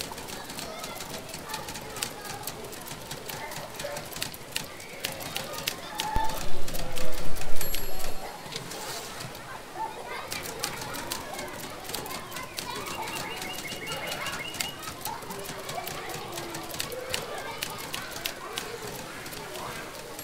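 Indistinct voices in a busy ambience, with many sharp clicks throughout and a louder stretch from about six to eight seconds in.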